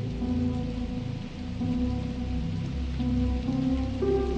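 Electronic wave / future garage track: held synth chords over a deep bass line that slides in pitch, with a steady rain-like hiss in the mix. The bass dips briefly a little after a second in.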